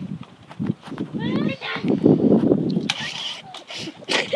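A boy's voice: a short rising cry, then a loud, rough shout lasting about a second in the middle.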